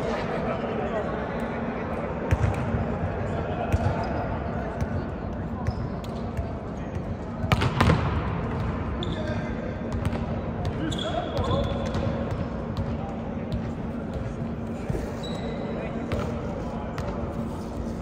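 Chatter of several people echoing in a large gym, with balls bouncing on the hardwood court now and then; the loudest thuds come in a quick cluster about eight seconds in.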